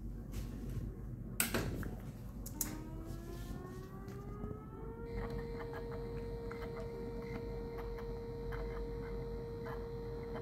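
3D-printed mini Whelen Hornet siren model driven by a stepper motor, starting an alert cycle. After a click, a whine rises in pitch for about two seconds and then holds one steady tone.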